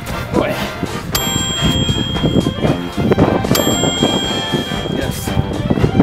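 Background music with two bell-like dings: one about a second in and a second about two and a half seconds later, each ringing on as a held high tone.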